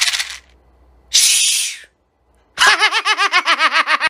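Two short bursts of scratchy noise, the first near the start and the second about a second in. Then a man's high-pitched, rapid laughter from about two and a half seconds in, pulsing about eight times a second and dropping slightly in pitch.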